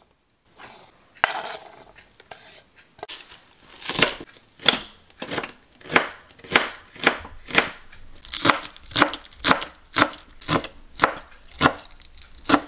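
Chef's knife chopping green onions on a wooden cutting board: sharp, even strikes of the blade through the onion onto the board, about two a second. Near the start there is a short scrape of the knife pushing chopped water chestnut off the board.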